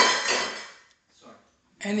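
A sudden clink with a ringing that fades away within the first second, like a hard object such as a cup or glass being knocked or set down.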